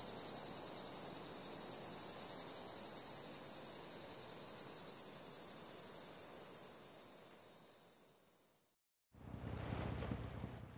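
A dense, high chorus of rainforest insects chirring with a fast, even pulse, fading out about eight seconds in. A low sound starts just before the end.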